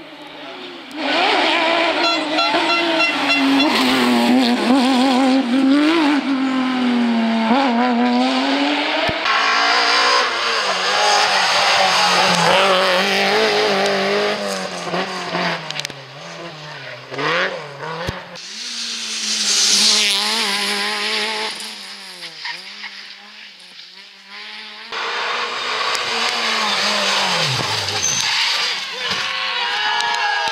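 Rally cars driven hard on a tarmac stage, their engines revving up and dropping back again and again as they brake, shift gear and accelerate through the bends, loud and close.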